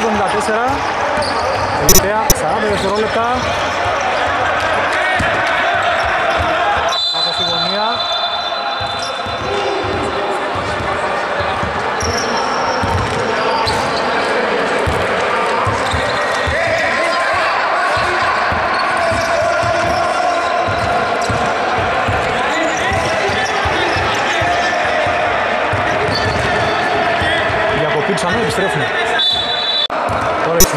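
Indoor basketball game: a ball bouncing on a hardwood court and players' voices, with two sharp bangs about two seconds in. A referee's whistle sounds as a steady high tone for about two seconds from about seven seconds in and again briefly near the end.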